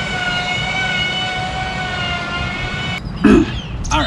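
An emergency-vehicle siren holding a long wail, its pitch wavering slightly. It stops abruptly about three seconds in.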